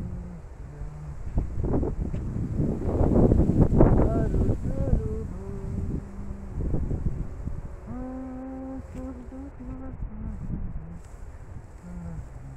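A man's voice carrying a slow, wavering melody with long held notes, over wind buffeting the microphone that is loudest about three to four seconds in.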